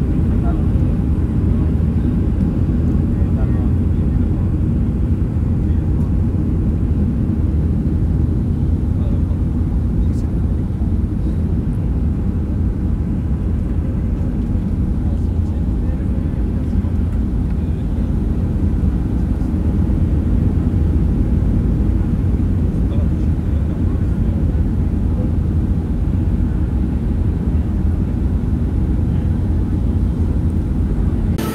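Jet airliner cabin noise on final approach: a steady low rumble of engines and airflow heard from inside the cabin.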